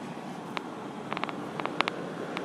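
A pause between shouts: steady outdoor background hiss with a few short, faint clicks, most of them between one and two seconds in.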